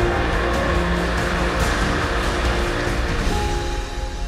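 Guests applauding over soft background music, the clapping dying away near the end.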